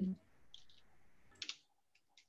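A few faint, short clicks, the first about half a second in and another near one and a half seconds, after a spoken 'mm-hmm' ends.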